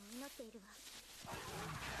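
A short spoken line in Japanese from the anime, then about a second in a low, rough growl of a monstrous beast from the anime's soundtrack.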